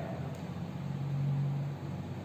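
A pause between speech: a faint low hum and hiss of background noise, the hum swelling briefly near the middle.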